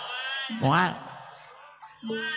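A man's exaggerated character voice, a wayang golek dalang voicing a puppet, comes through a sound system: one loud call about half a second in that rises and falls in pitch, then fades away.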